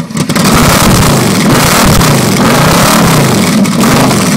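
Yamaha XVZ1300 Royal Star Venture's V4 engine revved through newly fitted chrome slip-on mufflers. The engine note climbs sharply about a quarter second in, then rises and falls repeatedly with the throttle.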